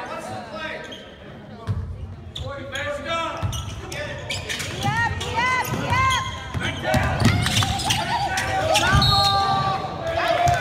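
Basketball dribbled on a hardwood gym floor, with repeated thumps, and sneakers squeaking in short chirps as players cut and run, busiest in the middle of the stretch. Players' voices call out over the action.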